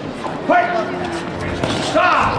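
Voices in a large hall: one person's shout about half a second in, holding its pitch briefly. A few short knocks follow near the end.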